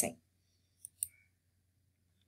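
Two faint clicks about a second in, a fifth of a second apart, from a computer mouse button being clicked, with near silence around them.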